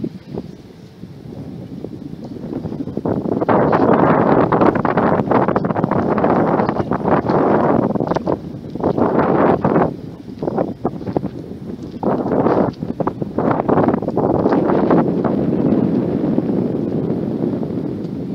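Wind buffeting the microphone in irregular gusts: it builds over the first few seconds, then comes and goes in strong blasts with short lulls, easing off near the end.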